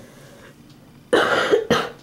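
A person coughing close to the microphone, two coughs in quick succession about a second in.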